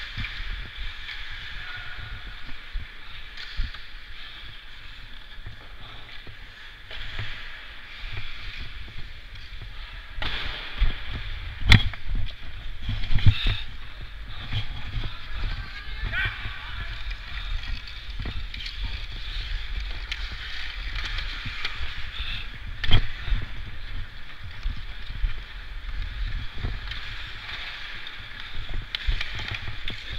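Ice skates scraping and carving on rink ice under a steady low rumble of wind on a helmet-mounted microphone, with voices echoing in the arena. Sharp cracks of a stick striking the puck, the loudest about twelve seconds in and another near twenty-three seconds.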